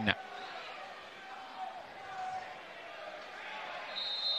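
Faint football-ground ambience: distant shouts and voices from the pitch and stands over a low steady hiss.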